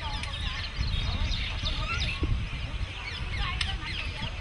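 Many birds chirping and calling at once in a dense, overlapping chorus of short rising and falling notes, over a steady low rumble.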